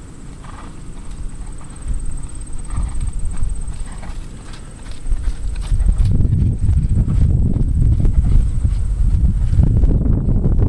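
Hoofbeats of a ridden horse moving over a sand arena, growing louder about halfway through as the horse passes close, with a low rumble underneath.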